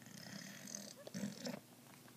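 A person breathing close to a phone's microphone, with two short, noisy breaths in the first second and a half.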